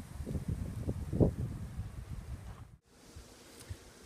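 Wind buffeting the microphone in uneven low gusts. The sound cuts out completely for a moment about three-quarters of the way through and is weaker afterwards.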